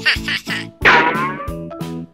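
Bouncy children's background music with a steady beat. About a second in, a short squeaky cartoon sound effect sweeps down in pitch over it.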